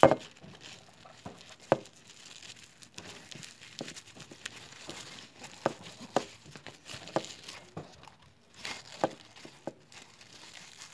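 Hands handling a foil-covered cup and ribbon: light foil crinkling with scattered soft taps and clicks, and a sharper knock right at the start.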